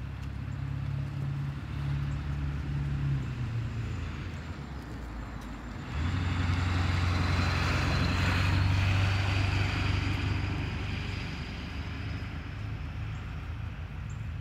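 Road traffic: engine hum from passing vehicles, then a flatbed truck driving past close by from about six seconds in. Its engine and tyre noise swell for a few seconds and then fade.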